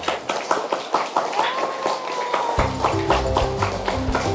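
A classroom of children clapping, many quick uneven claps. A music track with a bass line comes in about two and a half seconds in.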